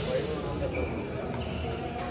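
Voices and chatter from players and spectators echoing in a large indoor badminton hall, with a faint sharp knock from play on court about a second and a half in.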